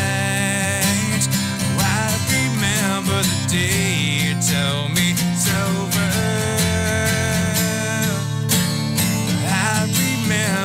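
Two acoustic guitars playing together in a steady, continuous passage of an acoustic rock song.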